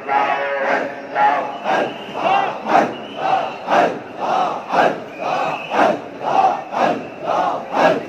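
A crowd of men chanting zikir together, a short chanted syllable repeated in a steady rhythm about twice a second.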